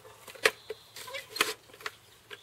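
Helmet-mounted ear defenders being swung down and pressed over the ears: a few sharp plastic clicks with light rustling of handling.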